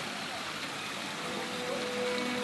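Steady rush of spring water pouring from carved stone spouts and splashing into a bathing pool.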